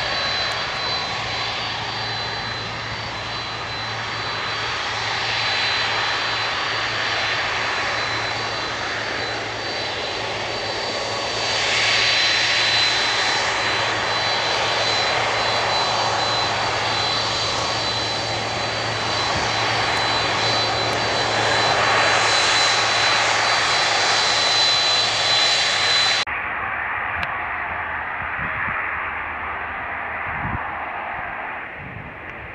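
Twin turbofan engines of a Boeing 767 running as it rolls along the runway: a steady jet rumble with a high whine on top, swelling a little twice. About four seconds before the end it cuts off abruptly, giving way to a quieter, duller sound.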